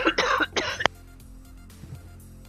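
A person coughing hard, three coughs in quick succession that stop a little under a second in. Quiet background music continues underneath.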